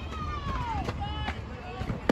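Voices of softball players and spectators calling out during the pitch: one long, high shout that falls in pitch over the first second, then shorter calls, over a low outdoor rumble.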